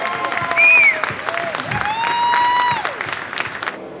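Audience applauding. Over the clapping a voice holds a long high note, with a short whoop about half a second in. The clapping dies away near the end.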